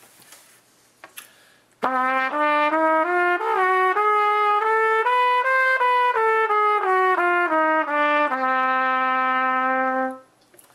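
Trumpet playing a D diminished (whole-step, half-step) scale, starting about two seconds in: separate notes climbing an octave and stepping back down, ending on a long held low D.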